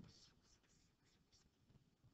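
Near silence: faint room tone with a few very faint ticks in the first second or so.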